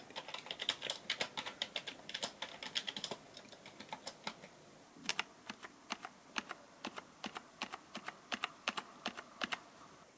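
Typing on a backlit computer keyboard: a quick, irregular run of key clicks with a short lull around the middle. The keyboard is being tested after its torn USB cable was repaired, and it works.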